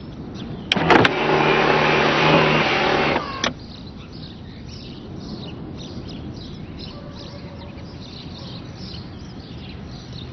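A car's electric roof motor runs with a steady whine for about two seconds. Two clicks come just before it starts and another comes shortly after it stops. Birds chirp in the background.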